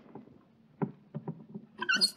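Radio-drama sound effect of a door lock on a spacecraft being worked: a few small clicks from about a second in, then a brief high-pitched sound near the end as the door gives way and opens.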